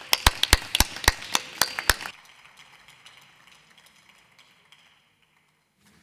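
A few people clapping: sharp, evenly spaced hand claps at about four a second that die away after about two seconds.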